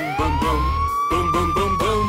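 A fire truck siren wailing in one long sweep. It rises quickly at the start, holds, then slowly falls in pitch, over upbeat song music with a steady beat.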